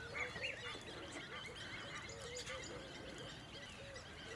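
Birds calling: a busy chorus of short chirps and whistles over a steadily repeated, honk-like call, several times a second.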